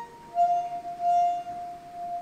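Melodica playing one long held note. It comes in about half a second in, after a brief gap.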